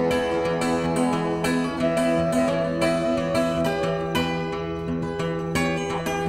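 Blues band playing an instrumental passage between sung verses: picked guitar notes over held, sustained tones.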